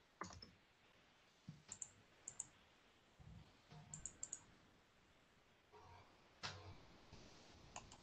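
Faint, irregular computer keyboard keystroke clicks, about a dozen scattered taps over near silence, as a search term is typed.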